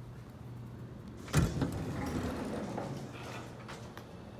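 Elevator doors of a 1968 Westinghouse traction elevator opening: a sudden clunk about a second and a half in as the doors start moving, then the panels sliding open with a rumble for about two seconds.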